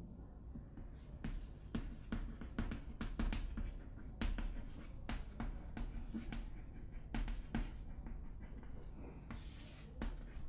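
Chalk writing on a chalkboard: a quick run of short scratches and taps as letters are written.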